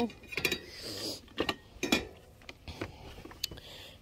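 Items being handled in a metal wire shopping cart: a handful of irregular sharp knocks and rattles, with quieter shuffling between them.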